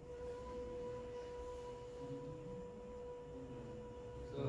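A person's voice holding one steady, high, sustained vowel tone, like the phonation task in a laryngoscopy exam. It comes through loudspeakers, so it sounds thin and almost pure, like a tuning fork.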